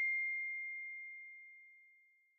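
The ringing tail of a single chime-like ding: one high, pure steady tone fading away and gone about a second and a half in.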